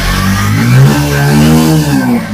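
Bajaj Pulsar 125's single-cylinder engine revved once: the pitch rises to a peak about a second in and falls back toward idle.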